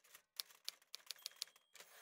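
Typewriter keys striking in a quick, irregular run, with a brief pause just before half a second in, matching credit text being typed out letter by letter.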